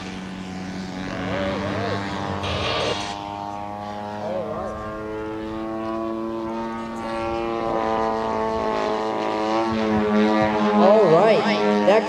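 Propeller-driven RC model airplane's engine running in flight, a steady drone whose pitch shifts slightly toward the end, with faint voices in the background.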